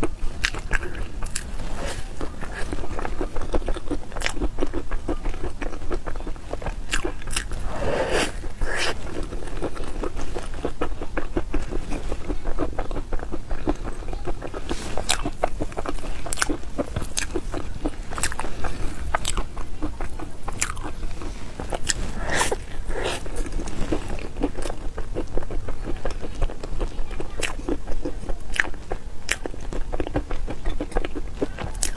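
Close-miked biting and chewing of a chocolate hazelnut mille crêpe cake, wet mouth sounds with crunching from the hazelnut pieces. A couple of louder bites stand out a third of the way in and again past the middle.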